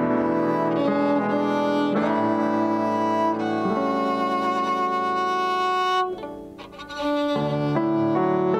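Live violin playing long held notes over an electric keyboard accompaniment. The music breaks off briefly about six seconds in and resumes a second later.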